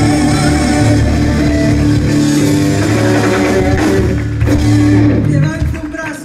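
Live band playing upbeat music: drum kit with cymbals, electric bass, electric guitar, keyboard and congas. The music cuts off shortly before the end.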